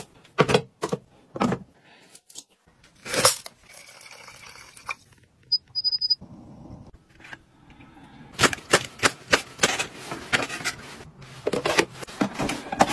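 Sharp clicks and knocks of kitchen items being handled, with two short high electronic beeps from a Westinghouse health kettle's control panel as its button is pressed, about five and a half seconds in; a quick run of clicks follows near the end.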